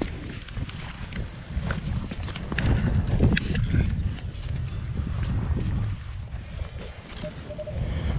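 Spade digging into turf and soil, with scattered scrapes and knocks of the blade, over a heavy low rumble of wind on the microphone.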